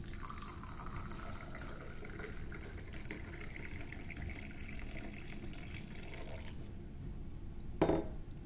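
Milky ginger tea poured in a steady stream from a stainless steel teapot into a clay khullad cup, the splashing rising in pitch as the cup fills and stopping about six and a half seconds in.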